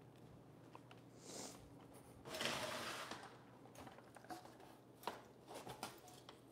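Faint rustling and scraping, then a few light clicks and knocks, as a fat-tire electric bike is turned upside down and set down on its saddle and handlebars.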